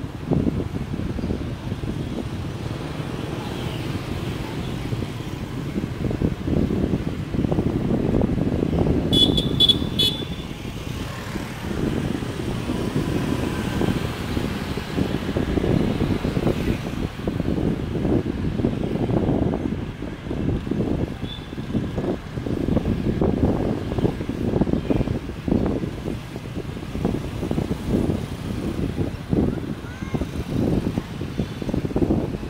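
Dense motorbike traffic heard from among the riders: many small engines running and tyre noise, with uneven wind buffeting on the microphone. About nine seconds in there is a short run of high beeps.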